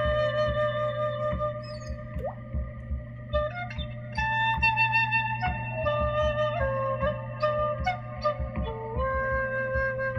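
An end-blown Ice Age flute, a replica of a Paleolithic bone flute, plays a slow melody of long held notes that step up and down in pitch. It sounds over a steady low drone and a soft, pulsing low beat.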